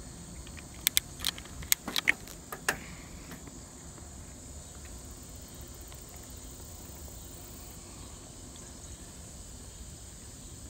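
Insects in the grass giving a steady high-pitched drone, over the low rumble of a bicycle rolling up a concrete sidewalk. A handful of sharp clicks and knocks come in the first three seconds.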